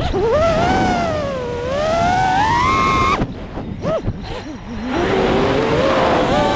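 FPV freestyle quadcopter's motors whining, the pitch rising and falling with the throttle. About three seconds in the throttle is chopped and the whine drops away into a rough, broken sound, then it climbs steadily again near the end.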